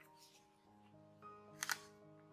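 Faint instrumental background music with held notes. About one and a half seconds in comes a brief double crinkle of tracing paper being handled and pressed flat on a cutting mat.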